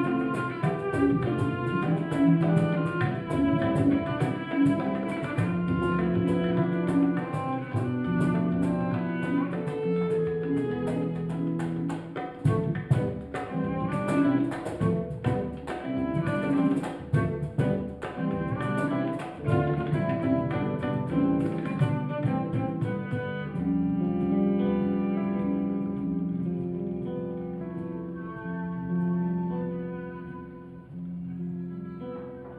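Acoustic Indian-fusion ensemble playing: bowed cello holding long low notes over guitar and quick hand-drum (tabla) strokes. About three-quarters of the way through the drumming stops, and cello and guitar carry on alone, growing quieter near the end.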